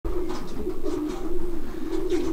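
Racing pigeons cooing: a low, slightly wavering coo that goes on without a break.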